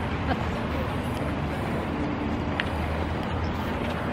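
Steady outdoor traffic noise, a low rumble with a wash of noise above it, with faint voices in the background and a single short click about two and a half seconds in.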